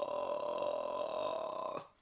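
A man's voice holding one long, steady, wordless note of admiration, which cuts off suddenly near the end.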